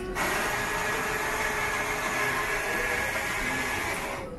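Melitta Cafina XT6 bean-to-cup coffee machine grinding beans for a large hot coffee: a loud, steady whirring grind that starts suddenly and cuts off abruptly.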